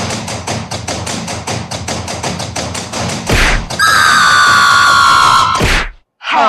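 Cartoon sound effects: a rapid run of thumps, about seven a second, for about three seconds, then a loud held whistle-like tone that slides slowly down in pitch and cuts off suddenly.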